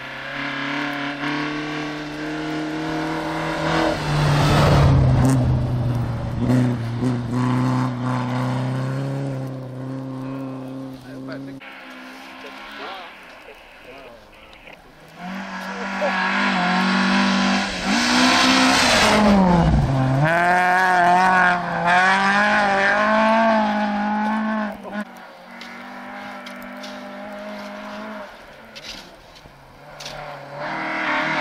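Rally cars' engines revving hard on a snowy stage as two cars approach and pass in turn, the engine pitch stepping up and down through gear changes. The second car is the loudest, with its pitch dropping sharply as it goes by.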